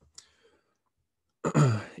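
A man's short breath or sigh, then a pause of about a second before he starts speaking again about a second and a half in.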